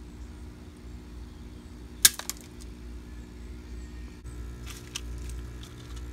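Handling noise from a small plastic aquarium sponge filter: one sharp click about two seconds in and a few fainter clicks later, over a steady low hum.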